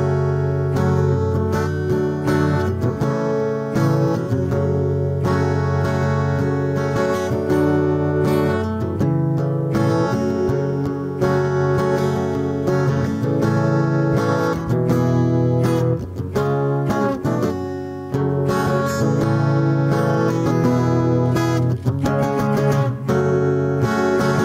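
Steel-string acoustic guitar played solo and unaccompanied, with a capo on the neck: an instrumental mixing strummed chords and picked notes, played continuously with frequent sharp attacks.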